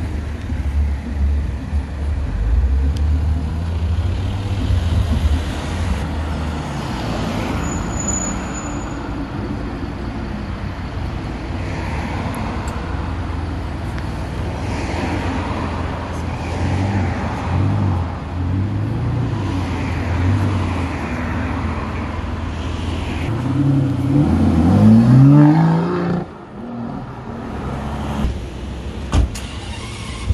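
Sports car engines pulling away and passing in street traffic, with a loud rising rev that builds for a couple of seconds near the end and cuts off suddenly.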